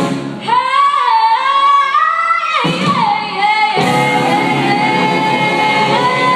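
A woman singing lead with a live rhythm-and-blues band. She sings a sliding, wavering phrase while the band drops out for a couple of seconds, then the full band comes back in about four seconds in under a long held note.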